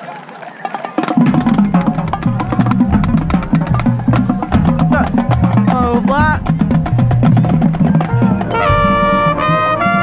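Marching band music starting suddenly about a second in with drums and percussion playing rapid strokes. Near the end the brass, trumpets among them, comes in with held chords.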